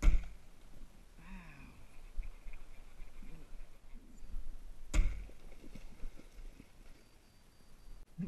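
Two sharp knocks about five seconds apart, the first right at the start, with a brief low voice sound between them and only faint handling noise otherwise.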